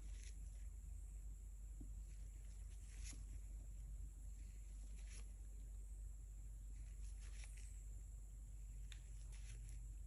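Quiet room tone with a steady low hum and a few faint, brief rustles: handling noise from a gloved hand bringing a wooden skewer to the wet paint.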